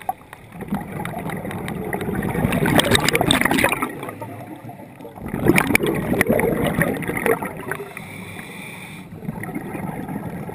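Scuba diver breathing underwater through a regulator: two bursts of exhaled bubbles gurgling and crackling, about three and five and a half seconds in, with quieter breathing between.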